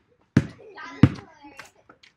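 A basketball bounces twice on a brick-paver driveway while being dribbled, two sharp thuds about two-thirds of a second apart.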